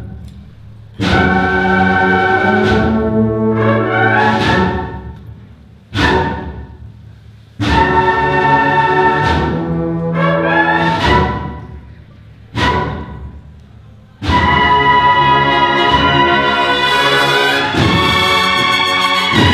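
Cornet-and-drum band of bugle-type cornets and drums playing the opening of a processional march. A drum strike and a loud held brass chord come three times, about six seconds apart, each dying away in the church's long echo. Near the end the playing carries on without a break.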